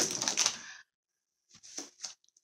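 A thin plastic bag crinkling and rustling as it is handled and set down. There is a burst at the start, a pause of about a second, then a shorter crackle near the end.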